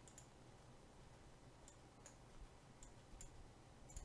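Faint computer mouse clicks, about five or six spread a second or so apart, over near-silent room tone.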